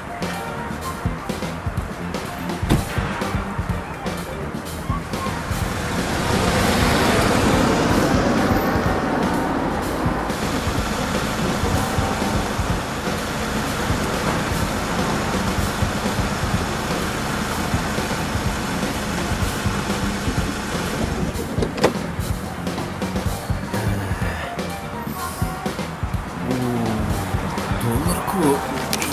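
A car driving past on a road, swelling to its loudest about seven seconds in and then fading, over background music.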